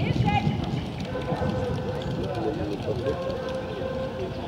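Indistinct voices of people talking in the background, with a few short chirps near the start and a faint steady hum from about a second in.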